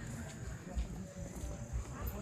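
Footsteps on a stone-paved path, about two steps a second, over a steady high insect drone.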